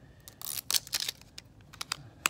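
Mouthwash pouring from a tipped bottle into a small plastic spray bottle, coming in a few short, splashy bursts, with a couple of sharp clicks of bottle against bottle near the end.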